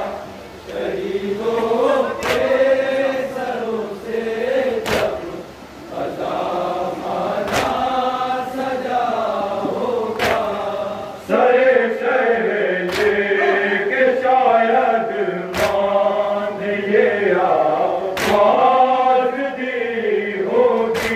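A group of men chanting a noha, an Urdu mourning lament, in unison with a lead voice. Sharp slaps land about every two and a half seconds in time with the chant, the beat of matam (rhythmic chest-beating).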